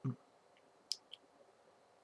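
Faint mouth noises in a pause of speech: a brief low voice sound at the start, then two small mouth clicks about a second in.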